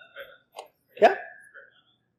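Brief speech: a man says one short word with a sharply rising, questioning pitch about a second in, after a couple of faint short sounds from his voice.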